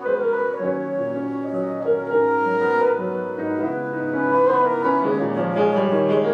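Flute and grand piano playing a duet, the flute holding long notes over the piano.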